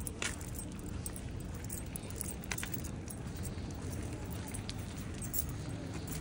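A bunch of keys jingling lightly in a hand with each walking step, in short scattered clinks, over a steady low rumble of street traffic.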